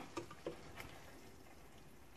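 A few light clicks and taps of a spoon against a stainless-steel pot while a thick tomato stew is stirred, all in the first second, then only a faint steady hiss.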